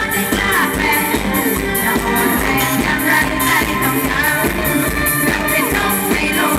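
Live mor lam band playing an up-tempo toei-style song: a singer's melody over electric band and a steady, fast drum beat.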